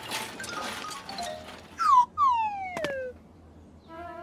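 Cartoon sound effects: a short, loud falling whistle-like glide about two seconds in, followed at once by a longer, slower falling glide with a sharp click near its end.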